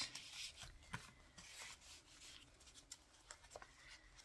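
Faint rustling and sliding of paper cards and ephemera being handled and drawn out of a paper pocket, with a light tap about a second in.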